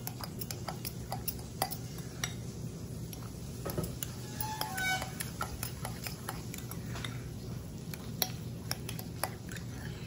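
Metal fork clinking and scraping against a glass mixing bowl while stirring and mashing deviled-egg filling, with light irregular taps throughout.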